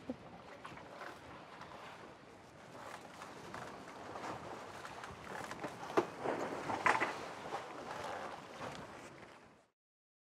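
Wind and water noise aboard a double-hulled voyaging canoe under sail, with a few sharp knocks from the deck about six and seven seconds in. The sound cuts off just before the end.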